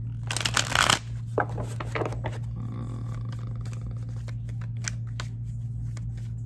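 A deck of tarot cards being shuffled by hand: a loud riffle of cards from about half a second to a second in, then a run of softer card clicks and slides.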